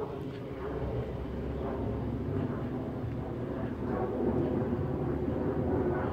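Steady outdoor background rumble with a faint low hum, typical of vehicles and machinery around a car lot.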